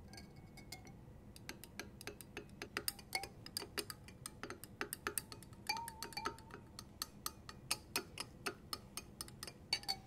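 Glass stirring rod clicking irregularly against the inside of a glass beaker while stirring melted gelatin, a few light clinks a second, with a couple of short ringing tones from the glass about six seconds in.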